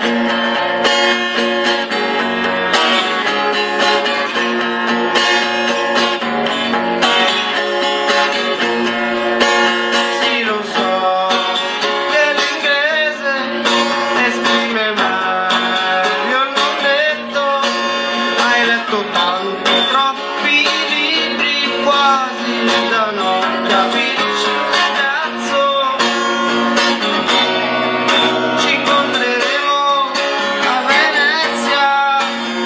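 A live song: a guitar played with a man singing over it.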